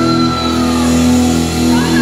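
Live heavy metal band's closing chord: distorted electric guitars and bass held and ringing after the drums stop, with a high note sliding slowly downward over it.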